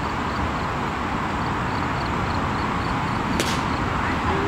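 A pitched baseball popping once into the catcher's leather mitt, a single sharp crack about three and a half seconds in, over steady outdoor background noise.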